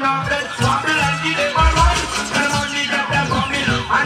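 Recorded music played loud over a sound system's speakers, with a heavy bass line. Two falling pitch sweeps slide down through the music in the second half.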